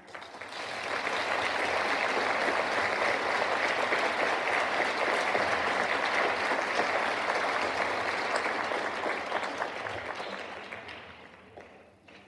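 Audience applause after a choir song ends: the clapping builds in the first second, holds steady, then dies away over the last couple of seconds.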